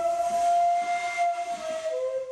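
Daegeum, the large Korean bamboo transverse flute, holding one long breathy note that sags a little about one and a half seconds in, then moving to a lower note near the end.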